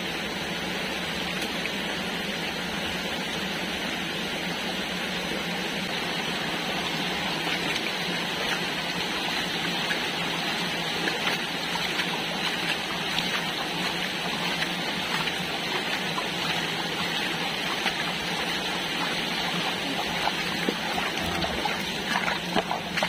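Steady rushing of running water, with a few small knocks and clicks in the second half.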